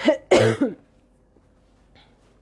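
A woman coughing twice in quick succession, a short cough and then a longer, louder one, both within the first second. She has a cold.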